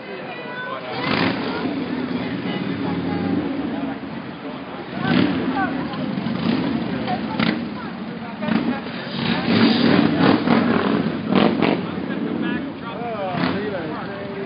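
Motor vehicle traffic on a city street: engines running close by, swelling about a second in and loudest around ten seconds in, with indistinct voices and scattered sharp knocks.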